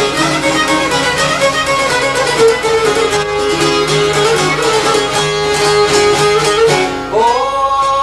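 Live Albanian folk music on violin and long-necked lutes (çifteli and sharki): a bowed and plucked string melody. About seven seconds in, a male voice begins to sing over the strings.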